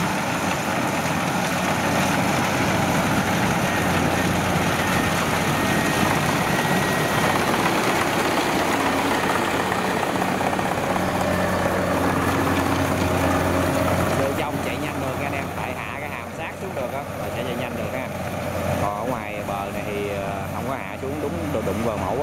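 Rice combine harvester running at working speed while cutting and threshing: a steady engine drone under a dense mechanical rattle. About fourteen seconds in the sound drops a little and thins, with people's voices over the machine.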